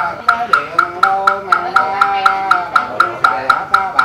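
Buddhist chanting over a wooden fish (mõ) knocked at an even beat of about four strokes a second, each knock ringing briefly. The chanting voice holds long notes that bend slowly in pitch.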